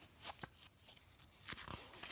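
Faint paper rustling with a few soft crackles, the sound of a picture book's pages being handled.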